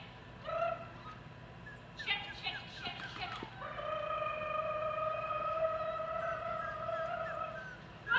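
A dog vocalising excitedly while it runs an agility course: a few short yips about two seconds in, then one long, steady, high whine lasting about four seconds.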